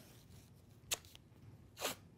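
White athletic tape being pulled off the roll and torn by hand: two short rips, a sharp one about a second in and a slightly longer one near the end.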